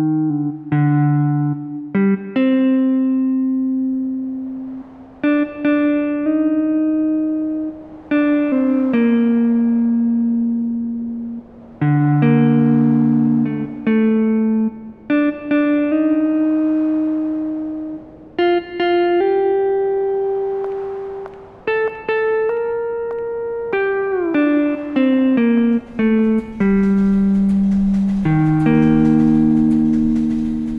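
Instrumental karaoke backing track in G minor: the intro, with a melody of held notes over guitar accompaniment and no vocal. A steady high hiss joins near the end.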